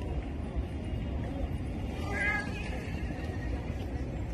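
Street background at night: a steady low rumble with faint voices, and a brief high-pitched call about halfway through.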